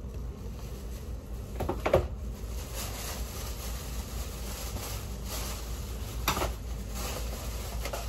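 Plastic shopping bag rustling as hands dig through it and handle its contents, louder about two seconds in and again a little after six seconds, over a low steady hum.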